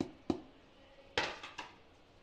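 Light knocks of a plastic flour container and hands against a steel mixing bowl while flour is tipped in: two small taps at the start, then a louder knock with a short scrape about a second in.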